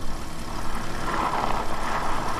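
Fat four-inch tires of an electric bike rolling over icy, crusted snow: a steady rough noise over a low rumble, growing louder about a second in.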